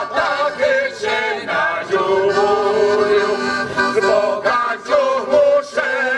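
Slovak folk song sung in harmony by a group of mainly men's voices, holding a long chord through the middle before moving on.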